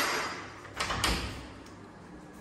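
Wooden door knocking as it is moved: a fading knock at the start, then two sharp knocks close together about a second in.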